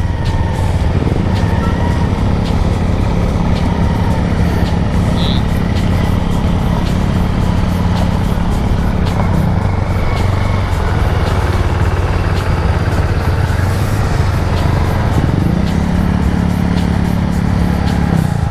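Yamaha Aerox 155 scooter's single-cylinder engine running at a steady cruise, with wind rushing over the helmet-camera microphone. The engine hum eases off about halfway through and picks up again near the end as the throttle is reopened.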